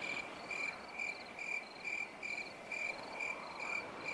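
Crickets chirping in an even rhythm, about two short chirps a second at one steady pitch, over a faint background hiss.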